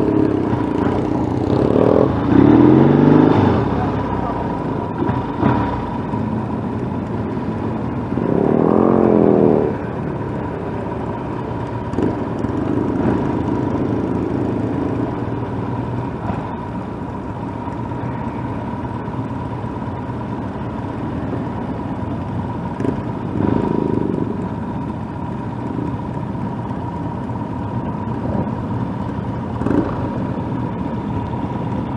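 Motorcycle engines running in slow traffic, with the nearest bike's engine rising in pitch as it accelerates about two seconds in and again around eight to nine seconds. Wind and road noise run underneath.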